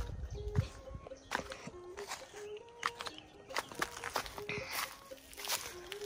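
Footsteps on dry ground as someone walks along the kiln, with scattered light knocks. Faint music with a simple melody of short held notes plays in the distance.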